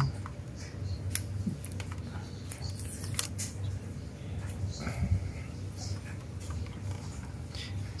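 Scattered light clicks and scrapes of hands handling a 1:18 diecast model car while its front hood is freed and lifted open, over a steady low hum.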